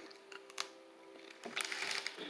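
Quiet bite into a light, meringue-like cookie: a few soft clicks, then faint crackly mouth and handling sounds near the end, over a faint steady hum.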